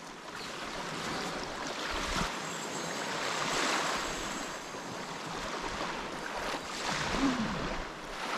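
Small waves washing up on a sandy beach, a steady wash, with wind on the microphone.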